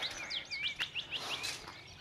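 Birds chirping: a quick run of short, sweeping high notes over the first second and a half.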